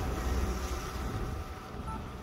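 Wind buffeting the microphone over the steady rush of water along a sailboat's hull as it moves through open sea.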